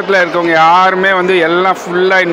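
A man talking close to a handheld microphone; only speech.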